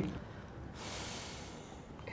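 A person drawing a breath in, a soft hiss about a second long, just before speaking again.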